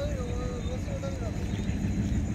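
A steady low rumble, with a faint, distant wavering voice in about the first second.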